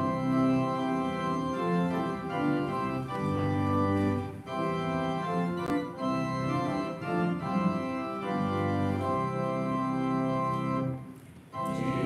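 Organ playing the introduction to a hymn in sustained chords. The organ breaks off briefly near the end, just before the congregation starts singing.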